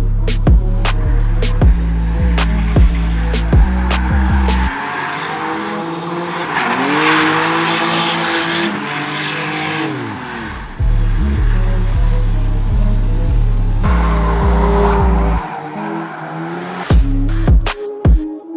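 Background music with a deep beat gives way, about five seconds in, to a BMW Compact with a turbocharged M50 straight-six drifting: the engine note dips and climbs again over tyre squeal for about six seconds. The music then returns, broken by a shorter stretch of engine sound near the end.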